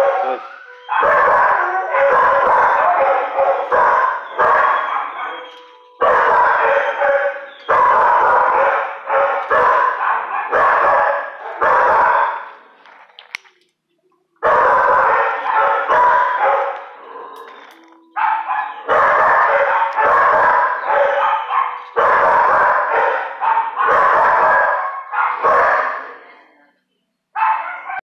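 Dogs barking loudly and rapidly in a shelter kennel, in runs of a few seconds with short pauses between.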